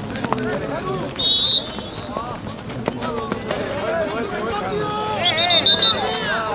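Voices shouting and calling out at an outdoor football match. Two brief shrill high sounds, about a second in and near the end, are the loudest moments.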